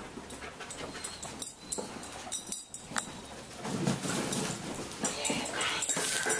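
A dog searching among cardboard boxes: scattered light knocks and clicks as the boxes are nudged, with a brief high whine near the end.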